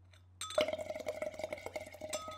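Metal straw rattling and clinking against a glass wine glass while someone sips through it, with the glass ringing in a held tone. The small rapid clinks start about half a second in.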